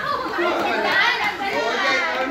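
Overlapping chatter: several people talking at once.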